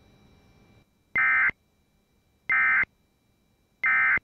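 Emergency Alert System End of Message: three short bursts of screechy two-tone data, each well under half a second and about a second and a half apart, marking the close of the alert.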